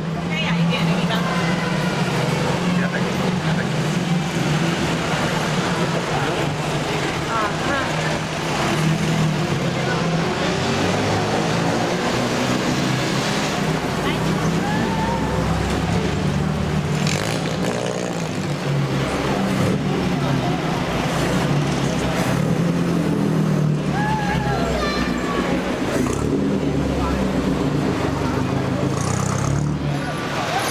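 Engines of pre-war vintage sports cars running steadily as they pass one after another along a crowded street, with crowd chatter on top.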